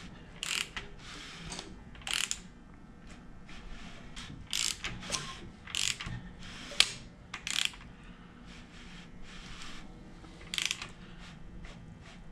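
Ratchet wrench on the crankshaft of a Ford 4.6-litre two-valve V8, clicking in short irregular bursts as the engine is turned over by hand. The crank is being rotated through two full turns to check that the cam timing marks return to the same spots.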